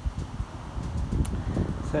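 Uneven low rumble of wind on the microphone, with a man starting to speak at the very end.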